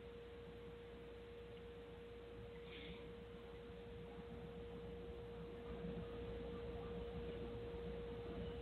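A faint, steady single tone, a constant hum at one mid pitch, over low hiss on a quiet broadcast line.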